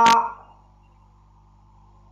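A drawn-out vowel held on one steady pitch ends with a click within the first half second. After that there is only a faint, steady background hiss.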